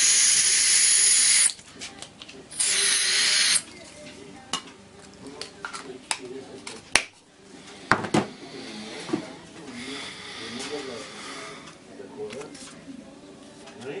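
Butane gas squirted from a refill can into the tank of a Topex 44E106 mini gas torch: two loud hissing bursts, the first about a second and a half long, the second about a second. A few sharp clicks follow about seven to eight seconds in.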